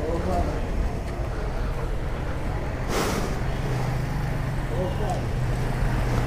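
Roadside traffic with a steady low engine hum throughout. Faint voices come through now and then, and a short sharp hiss sounds about halfway through.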